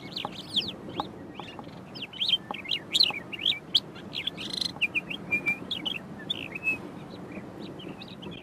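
Eastern clapper lark singing a fast, varied run of short whistled and chirping notes with quick rising and falling slurs, mimicking other birds rather than giving its usual flight-display whistle. A harsher, buzzier note comes about halfway through.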